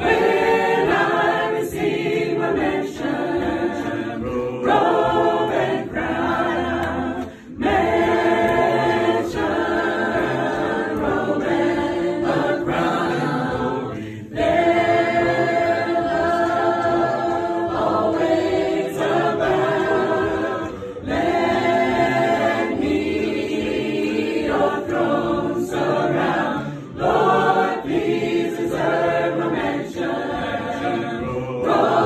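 A roomful of people singing a gospel song together without accompaniment, in long phrases with brief breaks between them.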